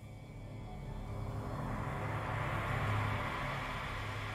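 Film trailer sound effect: a low rumble with a rushing, jet-like noise that swells steadily louder.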